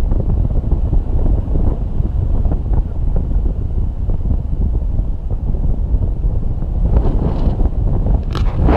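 Wind buffeting a handheld camera's microphone in paraglider flight, a loud, steady low rumble. A brief louder gust comes near the end.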